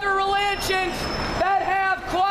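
A voice singing long held notes in short phrases, gliding up and down at the ends of phrases, with a brief break about halfway through.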